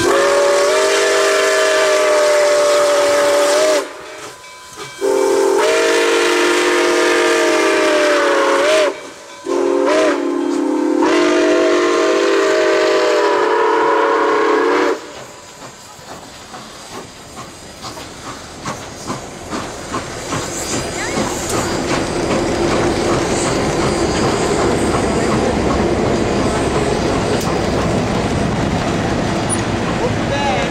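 Nickel Plate Road 765, a Lima-built 2-8-4 Berkshire steam locomotive, blowing its multi-note chime whistle in three long blasts as it passes; the whistle stops about fifteen seconds in. After that the tender, a diesel locomotive and passenger cars roll by with a rapid, growing clatter of wheels over the rails.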